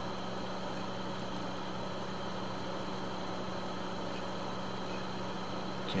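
Steady electrical or mechanical background hum, a low droning tone with a faint hiss over it and no change.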